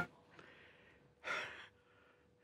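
Loud music cuts off suddenly at the very start. Then there is near silence, broken about a second in by a man's single audible breath, a short sigh, with a couple of much fainter breaths around it.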